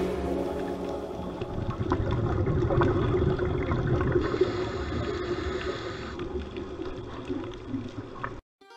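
Muffled underwater sound: a steady rush of water noise with many faint crackles and clicks.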